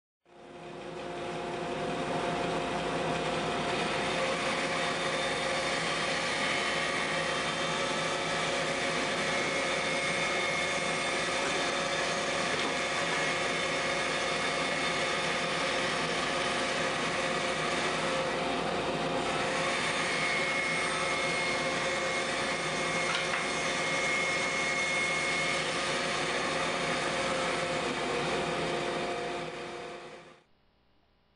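Bandsaw running steadily as it cuts a circle out of a board blank rotated by hand on a pivot-pin jig. The sound builds over the first second or two and falls away near the end.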